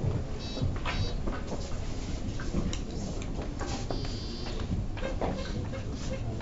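Billiard-room background noise with scattered light clicks and knocks, and two short high squeaks, one about half a second in and one about four seconds in.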